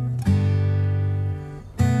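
Background music: acoustic guitar strumming chords, a new chord struck about every second and a half, each left to ring.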